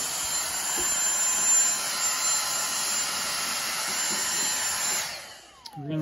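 Dyson DC58 cordless handheld vacuum running steadily with a high whine as it vacuums dust from fridge condenser coils. About five seconds in it is switched off and the motor winds down with a falling whine.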